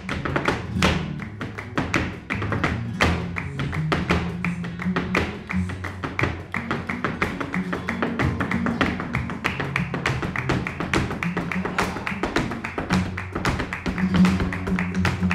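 Flamenco alegría: rapid footwork taps from the dancer's heels and hand-clapping (palmas) in a dense, even rhythm over flamenco guitar.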